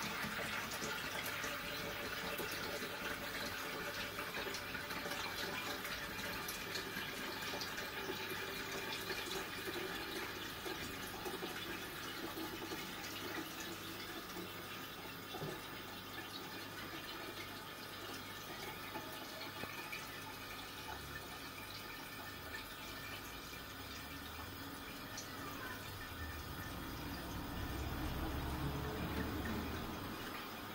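Milky liquid poured slowly from a plastic jug through a cloth-lined strainer into a pot in a steel sink: a faint, steady trickle of liquid.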